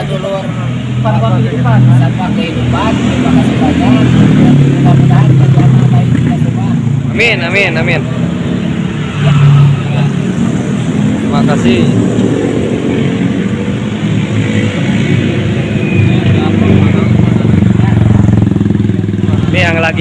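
Motorcycle engine running steadily close by, with people talking over it.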